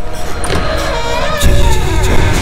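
Dramatic suspense background score with a sweeping whoosh-like sound effect, then a sudden deep boom about one and a half seconds in.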